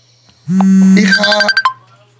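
A short synthesized electronic tune like a phone ringtone: a held low note, then a quick run of repeating high notes, lasting about a second.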